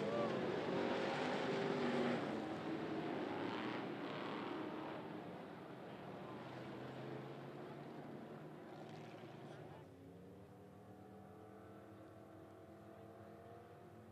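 Race car engines running at low speed under caution, the sound fading away over the first several seconds. About ten seconds in it drops suddenly, leaving a faint engine hum.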